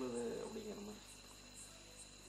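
A man's voice trails off in the first second, leaving steady high-pitched insect chirping in the background.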